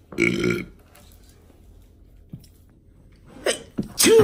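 A person's loud burp, about half a second long, just after the start.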